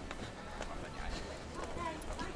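Footsteps going down concrete steps, regular light footfalls, with faint voices of other people in the background.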